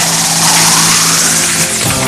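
Television transition sound effect: a sustained whooshing hiss over a steady low drone, accompanying an animated graphic wipe. It cuts off near the end as a music jingle begins.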